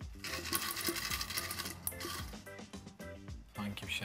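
Folded paper slips rustling and crinkling as a hand rummages through them in a glass bowl, busiest for about the first two seconds and then dying down.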